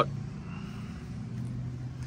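A steady low engine hum, typical of a vehicle idling.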